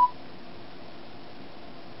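A short electronic beep stepping up from a lower to a higher note right at the start: the smartphone's voice-input tone signalling that it is ready to listen for dictation. Then a steady faint hiss of room tone.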